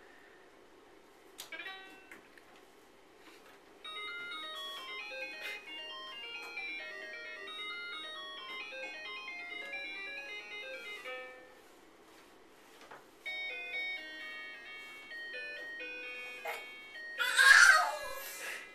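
Battery-powered baby toy playing a simple electronic tune of beeping notes, which stops near the middle and starts again a second or so later. A short loud noise comes just before the end.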